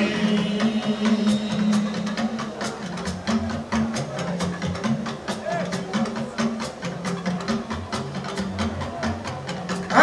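Live band playing an instrumental passage without vocals: quick, steady percussion strikes over a repeating bass line.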